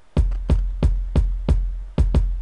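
Layered electronic kick drums, programmed in FL Studio's step sequencer, playing on their own: six deep, evenly spaced kick hits about three a second, each with a long low tail.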